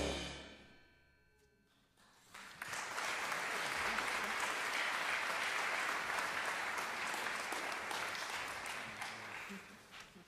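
A jazz big band's final chord rings away, and after a brief silence the audience applauds steadily, tailing off near the end.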